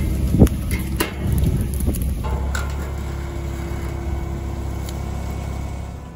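A motor running steadily with a low hum, with a few sharp knocks or clicks in the first two seconds.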